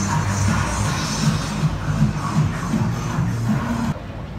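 Electronic dance-pop music with a heavy bass line blaring from an advertising truck's loudspeakers; it cuts off suddenly near the end.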